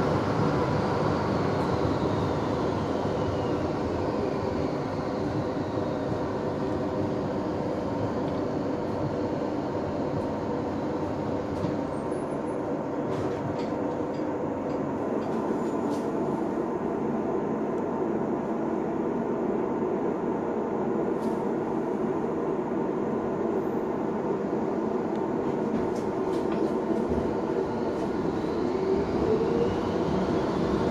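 Interior running noise of a Frankfurt Pt-type tram car in motion, a steady rumble and rattle from the passenger compartment. A high electric whine falls in pitch over the first few seconds, and whines rise again near the end as the tram picks up speed.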